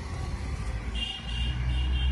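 Low rumble that grows stronger about a second in, with a faint thin high tone over it.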